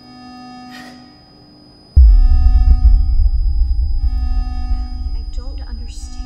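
Film score: a held drone of steady tones, then about two seconds in a sudden deep bass boom that rumbles on and slowly fades.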